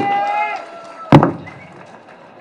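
The drawn-out end of a spoken 'thank you', then a single loud thump on a handheld microphone about a second in, the mic being knocked as it is lowered.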